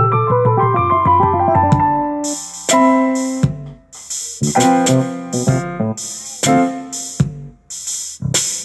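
Casio CTK-7200 keyboard playing an improvised jazzy piece on its stereo grand piano tone. A fast descending run of notes over a held bass fills the first two seconds. Then come choppy stop-start chords with hissing, high-pitched electronic percussion cut into short blocks.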